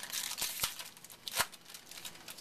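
Baseball cards and a foil card-pack wrapper being handled: crinkling, with a few sharp clicks and snaps, the loudest about a second and a half in.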